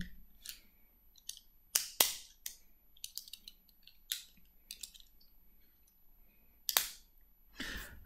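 Scattered handling clicks and short rustles as a Sphero Star Wars Force Band wristband is put on, with the two loudest clicks about two seconds in and about a second before the end.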